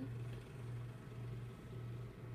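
A steady low hum, gently pulsing, over a faint hiss, like a fan or appliance running in the room.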